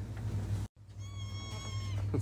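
A high-pitched squeal of excitement, held on one pitch for about a second, starting about a second in, over low shop hum.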